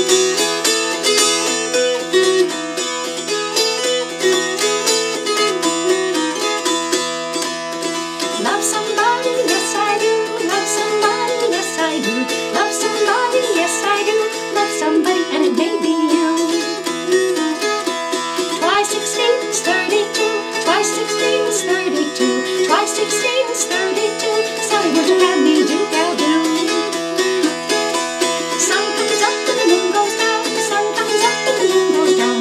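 Appalachian dulcimer strummed, playing a lively Southern Appalachian fiddle tune: a moving melody over a steady drone of the open strings.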